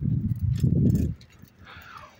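Low, irregular rumble of wind buffeting a phone microphone during a slow bicycle ride, for about the first second; after that it is quieter.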